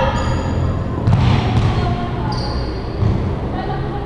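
High-heeled shoes stepping and stamping on a wooden gym floor, with several dull thuds over a low rumble, in a large echoing hall.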